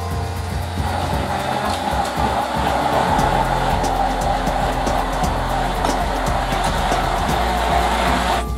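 Hand-held immersion blender running steadily in a stainless steel bowl, blending melted lemon butter, added a little at a time so it does not separate, into a celeriac cream sauce; background music plays underneath.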